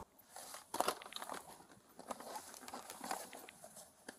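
Faint crinkling and rustling of papers and bags being handled, with small scattered clicks and scrapes, as items on a car seat are gone through by hand during a search.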